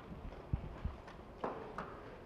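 Microphone handling noise as it is set down: two low thumps a third of a second apart, then two sharper clicks near the end.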